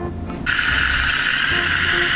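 A dental high-speed handpiece (drill) starts about half a second in and runs as a steady high whine, working on the patient's teeth during preparation for veneers.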